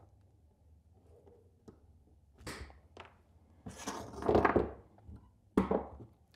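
Diagonal cutters biting through a black lamp cord, with a crunching cut a little after halfway that is the loudest sound. A few light knocks of handling come before it, and a sharp knock follows near the end.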